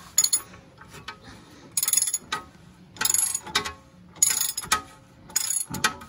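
Socket ratchet wrench clicking in about five short runs of strokes on a Tesla's front steering tie-rod end nut. The loose nut is being tightened because it caused the car's knock, but the ball stud turns with it instead of drawing tight.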